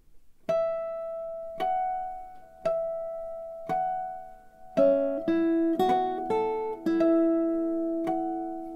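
Classical guitar duet: the first guitar plays bright, bell-like harmonics, single notes about a second apart, each left to ring and fade. About five seconds in, the second guitar joins with lower notes and the plucks come closer together.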